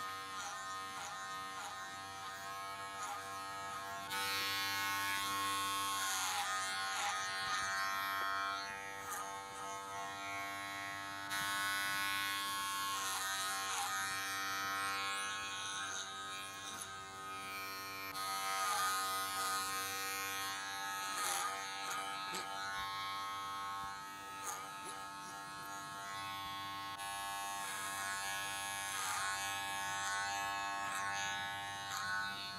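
Cordless electric hair clippers running with a steady buzz while cutting hair short. The buzz dips briefly in pitch again and again as the blades pass through the hair.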